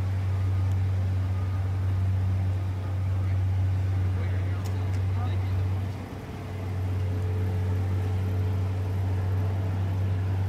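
A vehicle engine idling, a steady low hum that dips briefly about six seconds in.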